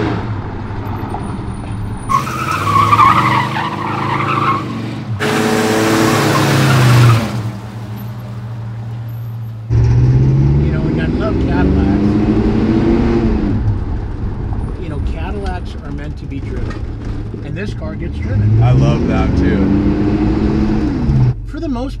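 Slammed 1967 Cadillac's engine revving hard in repeated rising and falling surges during burnouts and slides. Its tires squeal and skid on the pavement, most strongly about two to seven seconds in.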